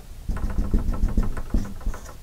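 Dry-erase marker tapping on a whiteboard in short strokes while drawing a dashed line: a quick series of light knocks.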